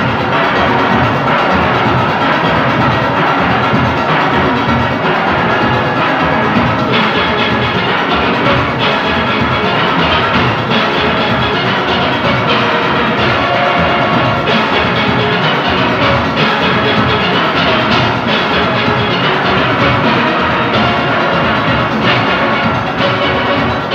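A full steel orchestra playing at full volume: many steel pans of all ranges ringing together in a fast, continuous arrangement over a steady percussion beat.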